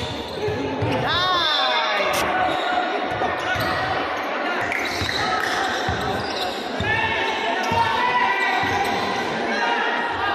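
Basketball being dribbled on a hardwood gym floor, a string of low thumps, with sneakers squealing on the court at about a second in and again near seven seconds, all echoing in a large hall.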